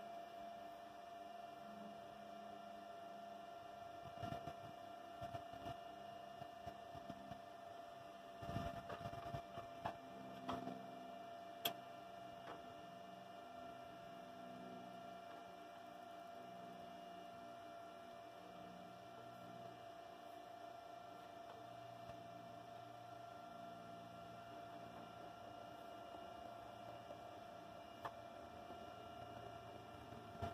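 Faint steady hum with a few light clicks and knocks around the middle.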